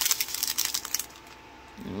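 A small clear plastic bag of diamond-painting drills being handled: crinkling plastic and the drills clicking against each other, a dense patter that stops about a second in.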